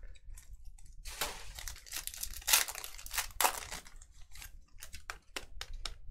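A trading-card pack wrapper being torn open and crinkled by hand, with a few louder rips, then a quick run of small clicks and taps as the cards inside are handled.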